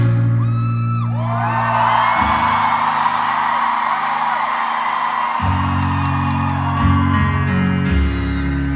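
Piano chords held low and changed slowly, with a large arena crowd cheering and whooping over them; the cheering swells about a second in and dies down near the end.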